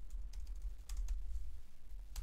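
Typing on a computer keyboard: a handful of key clicks at an uneven pace as code is entered.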